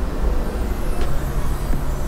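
A steady low rumble with a few faint ticks over it.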